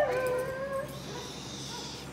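Border collie giving one high, drawn-out whine that falls in pitch and lasts about a second, as it clears a jump and runs on.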